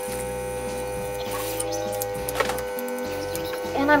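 Small airbrush makeup compressor running with a steady hum.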